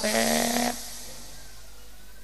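A man's amplified voice holding a drawn-out syllable at one steady pitch for well under a second, then a pause with only low room noise.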